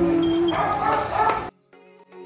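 Voices singing a held note that ends about half a second in, followed by higher, broken vocal sounds. The sound cuts off abruptly about one and a half seconds in.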